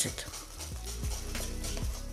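Soft background music with sustained low notes and a few gentle plucked strokes, over a faint scraping hiss of a wire whisk beating thick batter in a glass bowl.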